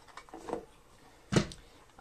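Wooden board-game organizer trays lifted out of a cardboard game box: a few light clicks and knocks, then one sharp wooden knock about a second and a half in.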